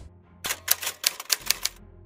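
Typewriter keystroke sound effect: a quick run of about ten clicks lasting just over a second, typing out a section title.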